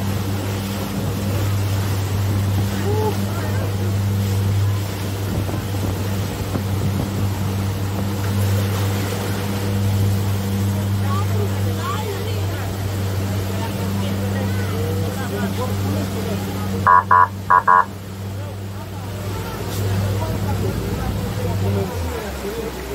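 A boat's engine running steadily under way with a low hum, over the rush of the wake churning past the hull. About 17 seconds in, three short high beeps sound in quick succession.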